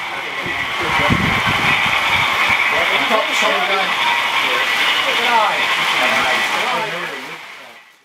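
People talking in a room, with a laugh at the start and a steady high hiss underneath. A short low rumble comes about a second in, and everything fades out near the end.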